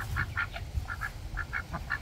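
Ducks giving a run of short, soft quacks, about ten in two seconds.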